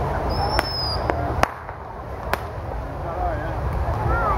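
Crowd chatter punctuated by four sharp firecracker pops in the first two and a half seconds, the loudest about a second and a half in. A brief high whistle sounds near the start.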